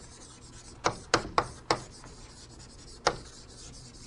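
Writing on a lecture-room board: a handful of short scraping strokes, four in quick succession early on and one more about three seconds in, over quiet room hiss.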